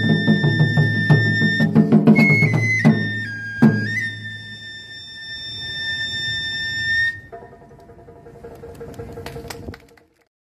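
Taiko drums struck in a fast, dense run, with a transverse flute holding a high note over them. The drumming thins after about three seconds, with one more heavy hit; the flute steps through a few held notes and stops about seven seconds in, leaving quieter playing until the sound cuts off at the end.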